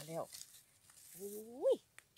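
A person's voice: a short word at the start, then one drawn-out exclamation that rises steeply in pitch and breaks off.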